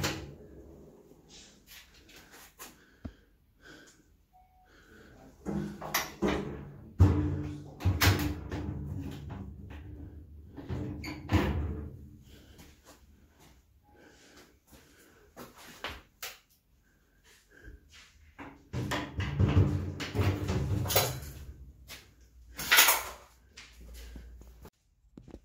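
Knocks and clicks from a wooden medicine cabinet door and its old key lock being handled, coming in a few clusters with quieter gaps between.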